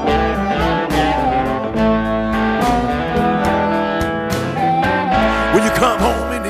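Blues band playing an instrumental break: guitar over bass and drums with a steady beat.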